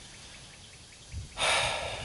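A man's breath, drawn in noisily through the nose as a short hiss starting about one and a half seconds in, over faint outdoor background.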